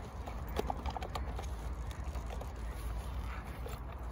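Water-testing kit items, a conductivity meter and a sampling stick, being packed by hand into a soft zipped kit bag: a scatter of light clicks and knocks.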